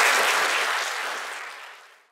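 Audience applauding at the end of a talk, the clapping fading away and then cutting off.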